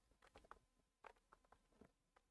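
Faint, irregular clicks of calculator keys being pressed, a dozen or so over two seconds, close to near silence.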